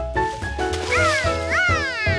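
Cartoon background music of short stepping notes, joined about a second in by two excited calls from the cartoon monkey George, each rising and then falling in pitch.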